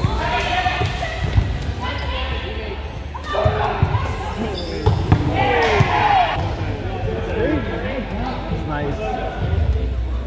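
Volleyball rally in a gym: several sharp thumps of the ball being struck, with players' feet on the hardwood court and players' short calls and shouts between them.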